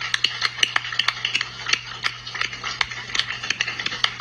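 Rapid, irregular clicking and tapping, several clicks a second, over a steady low hum.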